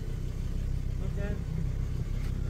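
Steady low rumble of a car's engine and tyres heard from inside the cabin, driving slowly over a dirt track. A short snatch of voice comes about a second in.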